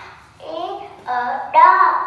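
A young girl's voice saying two short phrases in a lilting, sing-song way.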